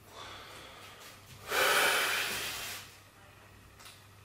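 A man breathing hard while he tenses into bodybuilding poses: a soft breath at the start, then a loud, forceful exhale of just over a second, starting about one and a half seconds in.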